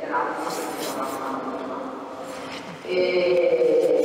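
Speech only: a person talking in Italian over a microphone, with no other sound standing out.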